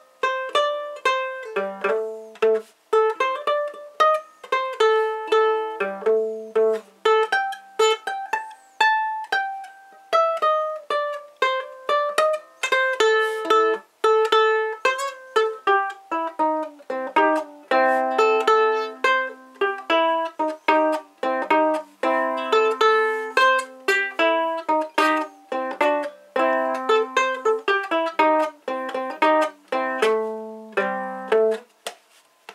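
Acoustic ukulele played solo, unamplified: a blues tune of picked chords and single-note lines.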